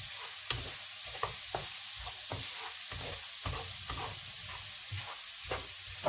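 Minced garlic sizzling in melted margarine in a nonstick frying pan, with a wooden spatula stirring and scraping across the pan about twice a second. The garlic is being sautéed until lightly browned to bring out its aroma.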